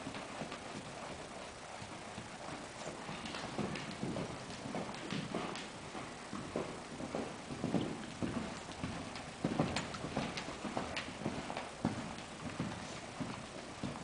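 A ridden horse's hooves striking soft dirt arena footing at the canter, a running rhythm of dull hoofbeats that grows loudest in the middle stretch as the horse comes nearest.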